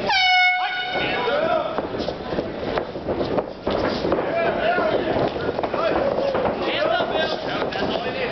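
A short, loud air horn blast of about half a second, signalling the start of the round. Voices call out around the cage for the rest of the time.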